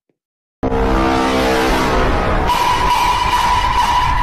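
Loud, distorted, bass-heavy meme sound effect starting suddenly after a brief silence: held tones over a heavy rumble, with a steady high tone joining about halfway through.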